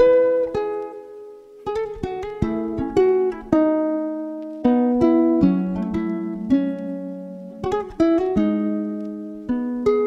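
Fingerstyle acoustic guitar playing a slow plucked melody over a chord progression, the notes ringing and fading, with a brief lull about a second in. It is processed with corrective EQ, RC20, chorus and reverb to sound like a sampled loop.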